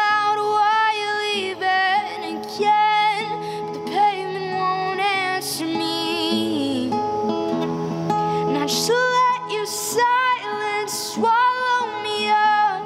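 A woman singing long held, rising and falling notes, without clear words, over a strummed steel-string acoustic guitar, in a concrete parking garage.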